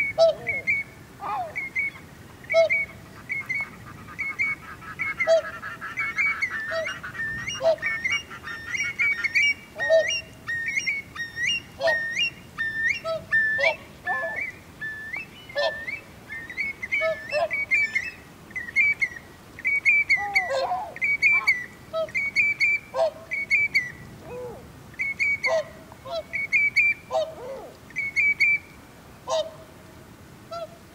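Many birds calling over one another in short, repeated calls, some low and some high, with a fast pulsing trill from about four to nine seconds in.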